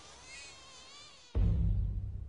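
Faint, high-pitched insect buzzing with a wavering pitch. About a second and a half in it cuts off, and a sudden loud, deep rumble starts and carries on.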